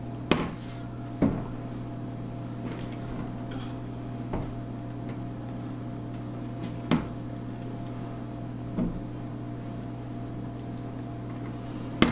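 A spatula knocking and scraping against a stainless steel mixing bowl and a metal bundt pan while thick cake batter is scooped across: about five short knocks, scattered several seconds apart, over a steady low hum.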